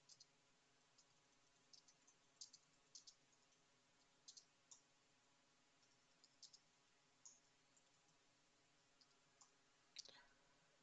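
Near silence broken by faint, sharp clicks at irregular intervals, some in quick pairs or triplets, scattered through the whole stretch.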